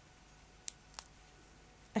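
Two light clicks about a third of a second apart, from a metal crochet hook and knitting needles knocking together as they are handled.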